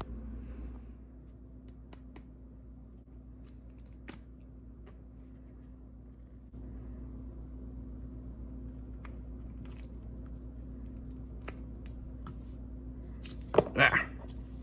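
Steady low hum of a small room with scattered faint clicks, then hands working a silicone lure mold open to free a cast resin lure, with a few loud sharp handling knocks near the end.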